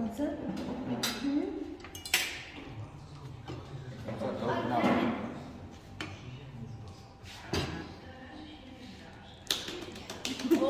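Low voices talking around a dinner table, with several short clinks of metal cutlery and a ladle against china plates and a steel serving pot as food is dished up.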